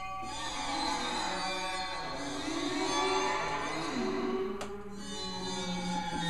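Alesis QS8 synthesizer played on its 'Water' program preset: sustained, layered tones whose pitches glide up and down. A brief click about three-quarters of the way through.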